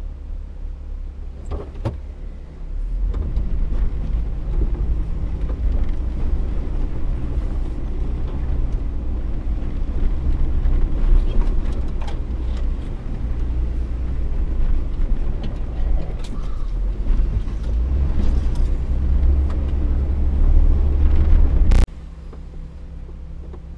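Vehicle engine and drivetrain rumbling steadily under load while driving through deep snow on a woodland trail. The rumble swells about three seconds in, is loudest near the end, and cuts off suddenly just before the end, with a few scattered knocks along the way.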